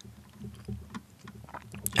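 Soft mouth clicks and breath noise picked up by a close microphone between phrases, with a sharp lip click just before speech resumes near the end.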